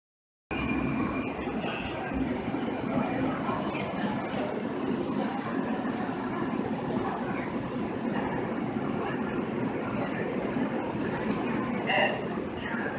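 Siemens S200 light-rail train in an underground station, a steady rumble as it draws along the platform and stands with its doors open. It cuts in after half a second of silence at the very start.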